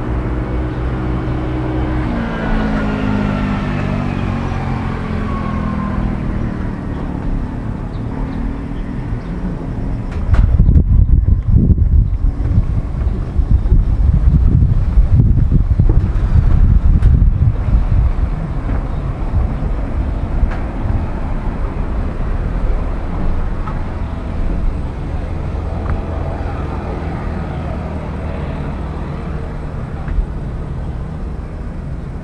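Roadside traffic: a motor vehicle goes by, its engine note falling in pitch over the first few seconds, over a steady low hum. About ten seconds in, a loud, uneven low rumble takes over for several seconds before it settles back to the steady hum.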